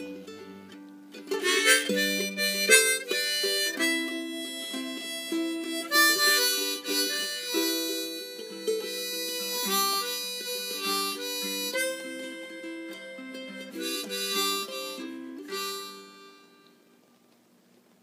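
Harmonica played over strummed ukulele chords, a closing instrumental break to the song, dying away near the end.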